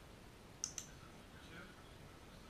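Two sharp clicks in quick succession, a little over half a second in.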